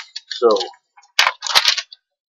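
Unboxing packaging being handled: a sharp click about a second in, then a brief rustling scrape.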